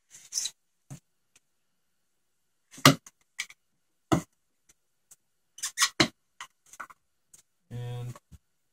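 Nylon zip-tie tails being snipped off flush with hand cutters: a series of sharp, irregularly spaced clicks, the loudest about three seconds in and several close together near six seconds.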